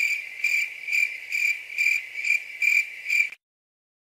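Cricket chirping sound effect, the cartoon gag for an awkward silence: even chirps about two a second that cut off abruptly a little over three seconds in.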